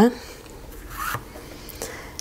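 Hands rubbing on a traveler's notebook cover while adhesive is worked off: one short scratchy rub about a second in and a fainter one near the end.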